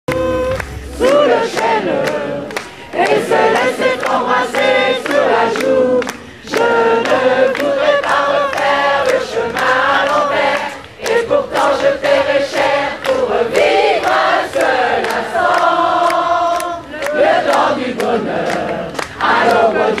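A large concert audience singing a song together without the band, phrase after phrase with short breaks, over a steady beat of about two strokes a second.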